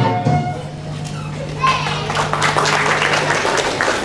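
Keyboard backing music stops about half a second in, leaving a low steady tone that cuts out near the end; from about a second and a half in, an audience claps in a large hall, with children's voices.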